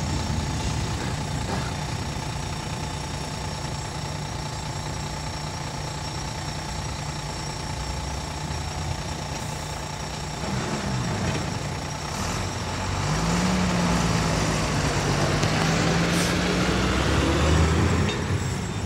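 Diesel engines idling with a faint steady high tone over them, then a heavy truck's engine pulling away about halfway through, its note rising and growing louder as the truck drives past close by near the end.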